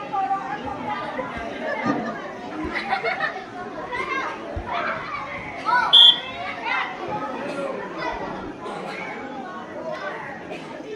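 Girls and women shouting and chattering during a small-sided football game in a netted turf arena. A short, loud, high-pitched sound stands out about six seconds in.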